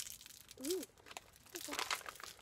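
A plastic candy bag and wrapper crinkling as they are handled, loudest near the end.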